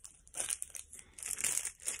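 Plastic packaging crinkling and rustling in irregular bursts as it is handled.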